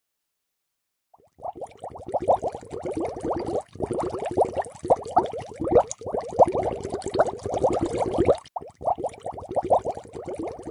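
Water bubbling and gurgling in a rapid run of plops, starting about a second in, with a few brief breaks and a short stop near the end before it resumes.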